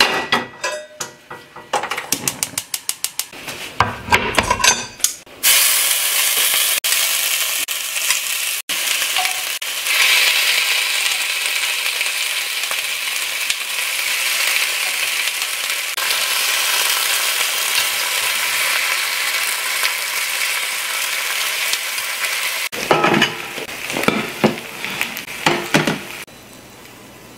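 Marinated beef short ribs (LA galbi) sizzling on a hot pan, a steady sizzle from about five seconds in until near the end. It is preceded by a quick run of clicks and clatter, and followed by knocks and clatter of dishes.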